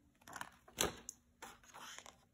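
A picture-book page being turned by hand: a few soft paper rustles and handling sounds.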